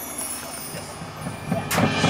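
Faint outdoor ambience, then near the end a marching show band starts playing: a few low drum hits followed by a sudden cymbal crash as the full ensemble comes in.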